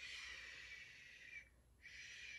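A woman softly blowing air through her lips to imitate the wind, a breathy whoosh with a faint whistle in it. It lasts about a second and a half and a second one begins just before the end.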